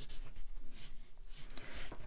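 Felt-tip marker rubbing across paper in short shading strokes.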